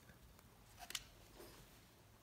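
Near silence, broken just under a second in by a faint short click and a small tick from handling the binoculars.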